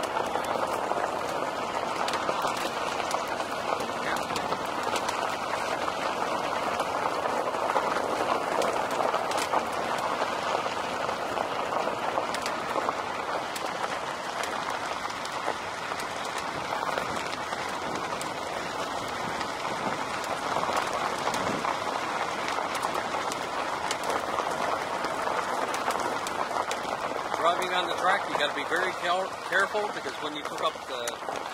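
Car tyres rolling over a loose gravel road, a steady crunching road noise. A voice comes in near the end.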